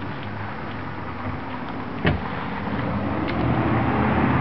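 A motor vehicle engine running steadily, growing louder near the end, with a single sharp thump about two seconds in.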